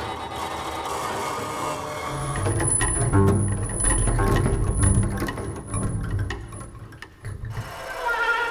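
Experimental ensemble music with a pulsing low body and clattering mechanical textures. It swells to its loudest in the middle under a thin, high held tone, then cuts off suddenly near the end.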